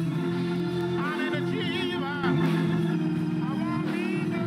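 Organ holding sustained chords under a voice singing wavering, drawn-out gospel phrases with vibrato, a little louder from about halfway through.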